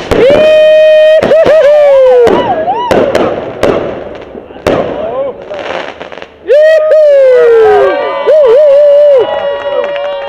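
Fireworks rockets launching from a rocket rack: loud whistling rockets, each whistle holding a pitch, wavering and then sliding down, with sharp bangs and crackling bursts between them. One long whistle starts just after the beginning and another runs from about the middle to near the end.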